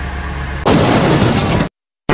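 Cartoon car explosion sound effect: a low rumble, then about two-thirds of a second in a loud blast that cuts off abruptly into silence about a second later.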